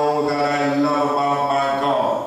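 A man's voice holding one long, steady note into a handheld microphone, intoned like a chant rather than spoken, and stopping right at the end.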